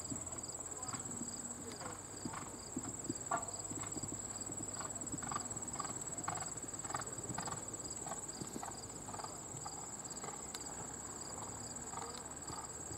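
Horse cantering on a sand arena: rhythmic hoofbeats on the footing, about two a second.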